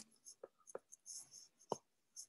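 A few faint, short taps of a stylus on a tablet's glass screen, the clearest near the end.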